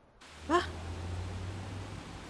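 A woman's single short, surprised exclamation, "Vad?" (Swedish for "What?"), about half a second in, over a low steady hum.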